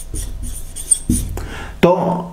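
Whiteboard marker writing strokes on a whiteboard, a scratchy rubbing that stops shortly before a man's voice says a single word near the end.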